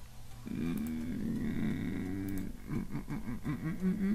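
A man humming without words: a held note from about half a second in, then a quickly wavering, up-and-down run in the second half.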